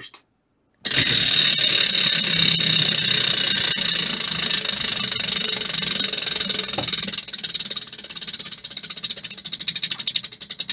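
Prize wheel spinning, its rim pegs clicking rapidly past the pointer. The clicking starts suddenly about a second in and slows toward the end into separate ticks as the wheel loses speed.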